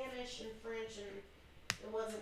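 A single sharp click near the end, over faint, quiet speech.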